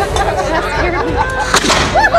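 A small muzzle-loading black-powder cannon fires once, about one and a half seconds in, a short sharp blast over the voices of people around it.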